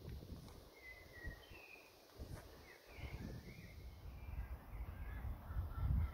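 Birds giving a scattered run of short calls over a low outdoor rumble.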